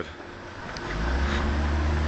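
A steady low hum that comes in about a second in and holds, with a few fainter steady tones above it and a light background hiss.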